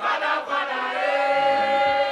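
Music with sung vocals holding long, sustained notes, choir-like.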